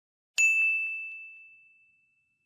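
A single bright ding sound effect: one bell-like strike about half a second in, its steady tone ringing away over about a second and a half.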